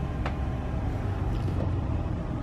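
Party bus engine running, heard as a steady low rumble inside the cabin, with one brief click about a quarter second in.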